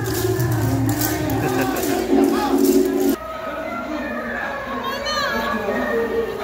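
Festival dance music with singing and a steady beat, mixed with crowd and children's voices. The sound changes abruptly about three seconds in, to quieter music and voices.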